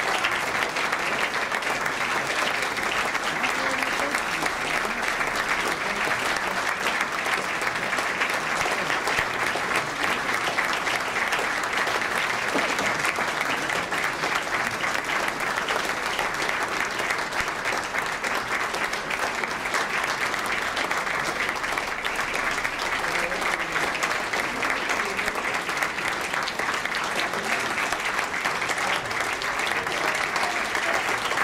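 Audience applauding, dense and steady.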